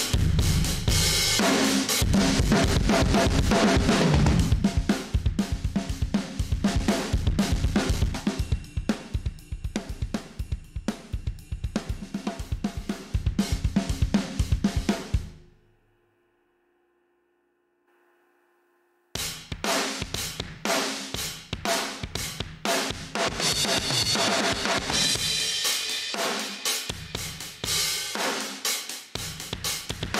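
Acoustic rock drum loop (kick, snare, hi-hat and cymbals) playing through an aggressive saturation and compression plugin that smashes the kit hard. The drums stop abruptly about halfway, drop out for about three seconds, then start again with the plugin on a different preset.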